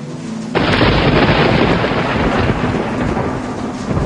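A loud, steady rushing noise with a low rumble, cutting in abruptly about half a second in.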